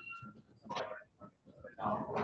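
Indistinct voices of people talking, heard in short broken bursts that are too faint and unclear to make out words.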